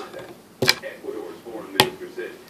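Two sharp clicks or taps a little over a second apart, under a soft voice.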